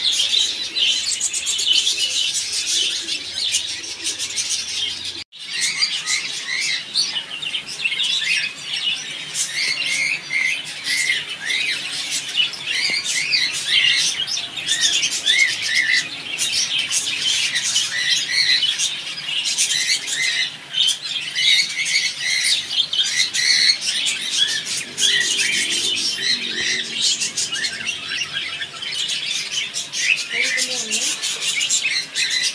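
A crowd of caged pet birds chirping and chattering together, many short high calls overlapping without a break. There is a brief dropout about five seconds in.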